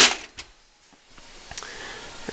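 Sheet-metal computer case cover knocking as it is handled just after being opened: a sharp clack at the start, a smaller knock just after, then faint rustling.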